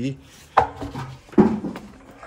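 Two dull knocks about a second apart as large off-road truck tyres are handled, a hand on the rubber tread.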